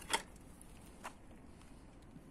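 A bicycle being parked on its side stand: a sharp click, then a fainter one about a second later.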